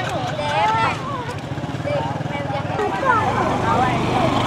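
A small motorcycle engine running steadily, with several people's voices chattering over it.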